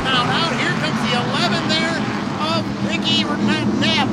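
A pack of SST Modified race cars running together around a short oval just after the green flag, their engines a steady drone under the track announcer's continuous call.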